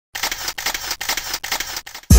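Camera shutter sound effect firing repeatedly in quick succession, like a burst of shots, a fresh click about every half second.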